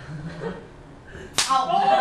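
A single sharp hand slap about one and a half seconds in, followed at once by voices.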